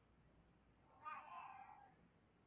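Near-silent room tone, broken about halfway through by one short pitched cry or squeak lasting just under a second.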